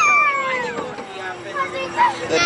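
A young child's long, high-pitched squeal on a spinning amusement ride, sliding steadily down in pitch and fading out about a second and a half in.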